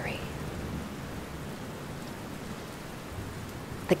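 Steady rainfall, an even hiss of rain with a low rumble underneath.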